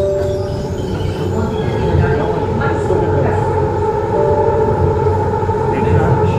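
Metro train running, heard from inside the carriage: a steady rumble with a held whine from the drive motors.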